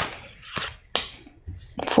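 Tarot cards being handled as a card is drawn from the deck and laid down on a tabletop: a handful of short, sharp clicks and taps.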